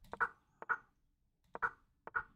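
Online chess board's move sounds: three short wooden-sounding clacks as moves are played in quick succession. Each one is a quick double tap.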